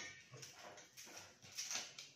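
A metal utensil scrubbed by hand with a scouring pad: short, rough strokes, about three a second.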